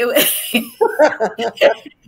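A woman laughing: a breathy outburst, then a run of short, quick pitched ha-ha pulses that die away near the end.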